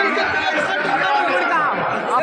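A dense crowd talking all at once close around the microphone: a loud, steady babble of many overlapping voices.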